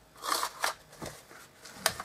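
Cardstock and paper of a small handmade gift box rustling and crinkling as it is handled, in a few short bursts, with a sharper click near the end.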